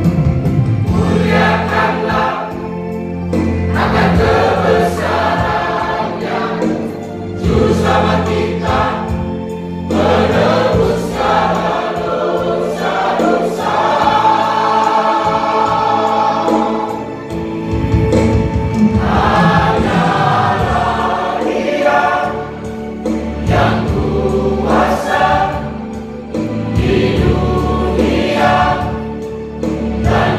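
A church choir singing with musical accompaniment, the sung phrases swelling and easing every few seconds over sustained low notes.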